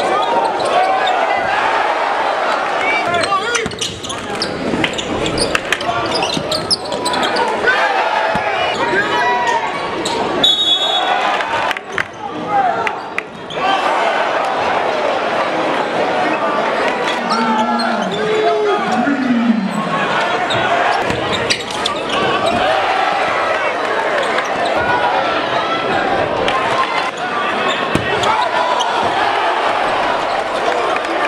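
Live basketball game sound in a crowded gym: the ball dribbling and bouncing on the hardwood court, sneakers squeaking, and crowd voices and shouting throughout. A short high whistle blast sounds about ten seconds in.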